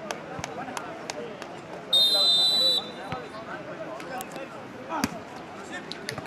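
Referee's whistle blown once about two seconds in, a steady blast of under a second, over a background of crowd chatter; about three seconds later a volleyball is struck with a sharp smack.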